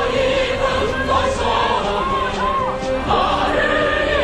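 Music with a choir of many voices singing held notes, a few voices sliding up and down in pitch.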